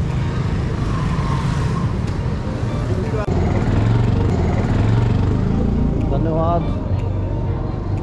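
Street traffic, with motorbikes running and passing close, and a low engine rumble that swells in the middle. A person laughs briefly near the end.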